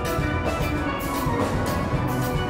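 Steel band playing a calypso: steelpans carrying the melody and chords over the deep notes of bass pans, with a drum kit keeping a steady beat on cymbals.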